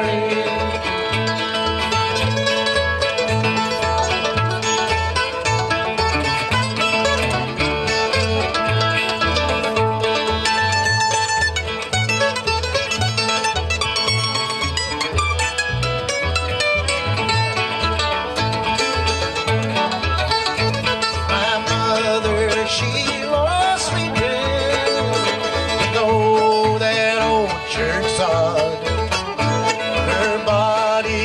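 Acoustic bluegrass string band playing an instrumental break: upright bass keeps a steady alternating-note pulse under fiddle, mandolin and guitar.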